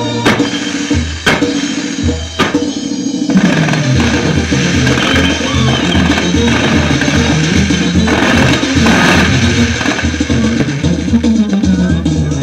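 Loud band music with a steady drum beat and bass. Several sharp firework bangs cut through it in the first few seconds as the fireworks tower goes off.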